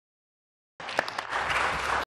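Dead silence for under a second, then a group of people applauding: a few separate claps that build into steady clapping.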